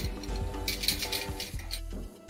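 Background music, with a few light metallic clinks about a second in from a wire dog crate's door being closed and latched.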